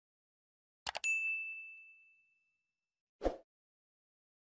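Sound effects of a like-and-subscribe animation: a quick mouse double-click followed at once by a notification bell ding, one high tone fading out over about a second and a half. A little after three seconds comes a short muffled thump.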